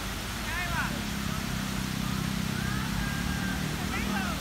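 Splash-pad fountain jets spraying with a steady hiss, with children's high voices calling out briefly. From about a second in, a low vehicle rumble rises underneath.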